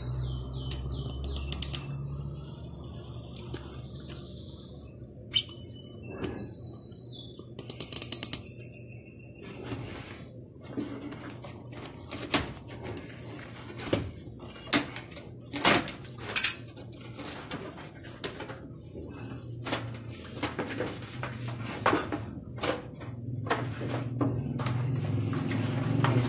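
Old, hardened rubber fender beading being pulled out from between a VW Beetle's rear fender and body: high squeaks for the first several seconds, then a long string of sharp crackles and snaps as the brittle, sun-baked rubber comes away.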